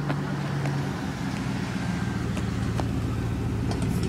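A pickup truck's engine running at low speed close by, a steady low hum that grows slightly louder as it approaches.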